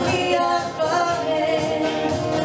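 Live band music: a woman singing lead at the microphone over acoustic guitar, electric guitar and bass.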